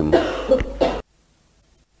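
A man coughing and clearing his throat for about a second, then the sound cuts out abruptly.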